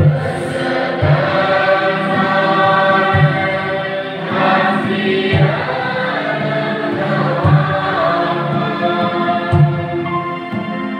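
Congregation singing a Bodo-language Catholic hymn together, held sung notes in many voices, with a low drum beat about every two seconds.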